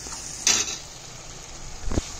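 Tomato masala sizzling in a frying pan as a wooden spatula stirs it, with a loud scrape about half a second in and another near the end. The steady sizzle is the sign the masala is fried through and the fat is separating from it.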